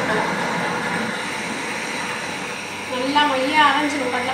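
Ultra Dura+ tabletop wet grinder running steadily, its stone rollers turning in the dosa batter.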